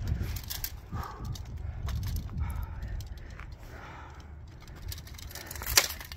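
Steel longsword sparring: scattered light clicks and taps of blades and gear, then one loud, sharp clash of blades near the end.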